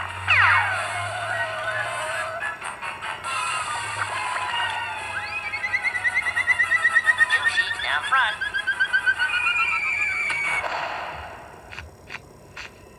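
Cartoon soundtrack music with comic sound effects, played through a TV speaker. A long falling, warbling tone runs through the middle, and the sound dies down near the end.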